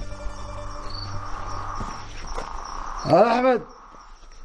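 Crickets chirping steadily in a night-time outdoor ambience. A tune fades out in the first two seconds, and a short spoken word comes about three seconds in.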